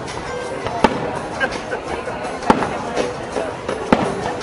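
Fireworks display: aerial shells bursting with three sharp bangs, about a second in, halfway through and near the end, with fainter pops between.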